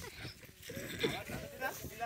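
Boys' voices calling out with short, wavering, bleat-like cries.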